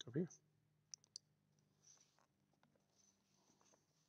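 Two sharp, faint clicks about a second in, from a computer mouse clicked to switch the stream's camera feed, followed by a few fainter ticks over near-silent room tone.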